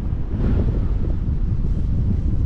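Wind buffeting the microphone on an open beach: a rough, uneven low rumble with a faint hiss over it, at a steady level.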